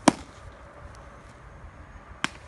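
A pitched baseball popping into a catcher's leather mitt: one sharp smack just after the start.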